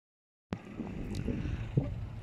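Silent for the first half second, then a click as the recording starts, followed by wind buffeting the phone's microphone in a low, uneven rumble.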